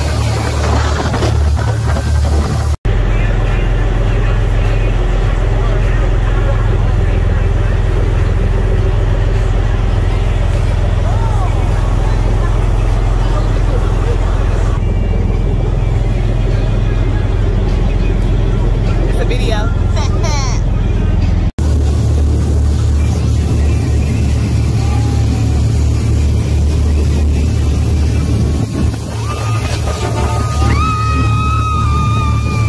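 Speedboat running fast over open water, with heavy wind rush on the microphone and spray; the sound cuts off abruptly twice, about 3 s and about 21 s in. Near the end a woman lets out a long, excited scream.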